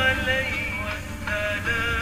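Background music: a solo voice singing a slow melody of long held and gliding notes over a low steady drone.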